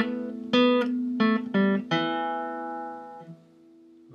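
Acoustic guitar picking a short fingerstyle phrase of about five notes in quick succession, the last left ringing and fading, with hammered-on notes on the third and fourth strings.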